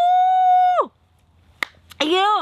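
A woman's long, drawn-out "wow!" held on one high pitch for about a second, then falling away: a delighted reaction to the taste of fresh juice. A short click follows about a second and a half in.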